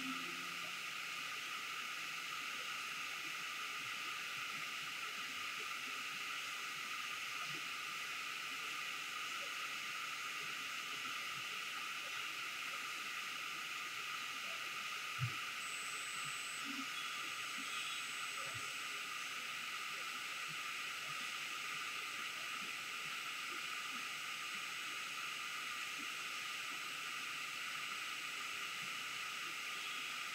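Steady, quiet background hiss, with one faint knock about halfway through.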